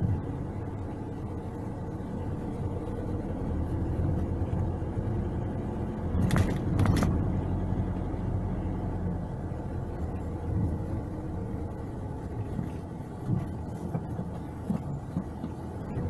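A car driving along a street, with steady engine and road rumble. Two brief knocks come close together about six to seven seconds in.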